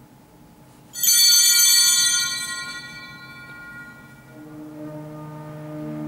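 Altar bells struck once at the elevation of the chalice during the consecration: a sudden bright, high ringing about a second in that fades away over about two seconds. Soft organ music begins about four seconds in.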